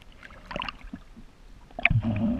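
Water splashing and sloshing at the surface as a swimmer moves, with a few short splashes about half a second in and a louder one near the end.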